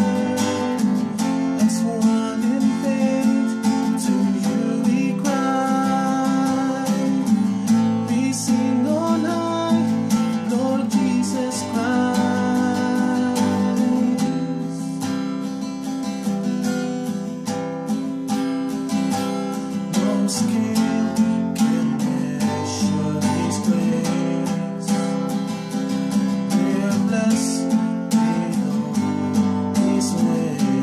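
Acoustic guitar strummed steadily, accompanying a male voice singing a slow worship song. The voice drops out for a few seconds around the middle while the guitar plays on.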